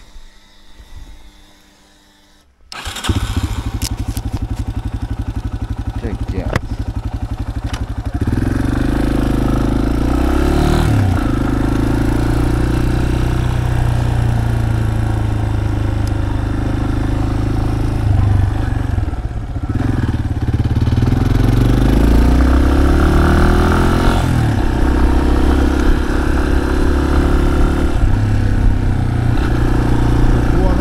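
Yamaha Serow 250's air-cooled single-cylinder engine starting about three seconds in and idling for a few seconds. The bike then pulls away and rides on, the engine louder, its note dropping briefly at gear changes twice.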